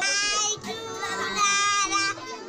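A child's high voice calling out in a drawn-out sing-song, two long held phrases with a short dip between them.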